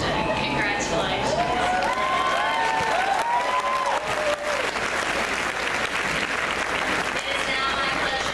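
Crowd applauding and cheering, with several rising-and-falling whoops overlapping about two to four seconds in, then dense, steady clapping.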